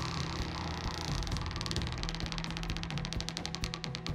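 Prize wheel spinning, its pointer clicking against the rim pegs in a rapid ticking that slows down toward the end as the wheel comes to rest. Background music with a low sustained tone runs underneath.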